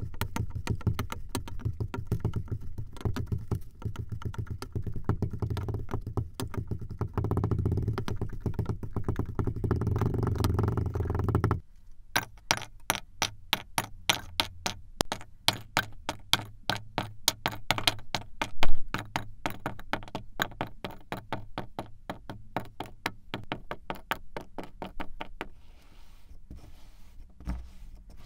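Sand in a glass being pressed down with a wooden tamper: a dense, steady crunching that stops suddenly. Then small cubes of kinetic sand dropped one after another into a plastic bowl, a run of light taps a few per second with one louder knock about three-quarters of the way through.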